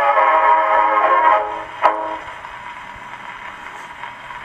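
A Victrola 215 acoustic phonograph plays the closing bars of a 1922 Victor 78 rpm dance-orchestra record. The band stops about a second and a half in, and a single sharp stroke comes just before two seconds. After it only the steady hiss of the shellac record's surface noise is left as the needle runs on.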